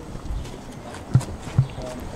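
Microphone handling noise: two dull thumps about half a second apart, with faint voices from the crowd behind.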